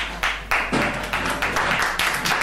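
Audience clapping, many quick irregular claps overlapping into applause.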